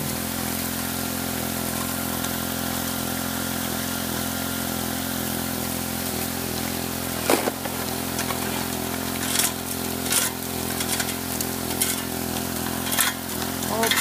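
A 1.5-inch water pump's engine running steadily while its water jets wash through a metal highbanker hopper. From about seven seconds in, shovelled gravel clatters into the hopper in a string of sharp knocks about a second apart.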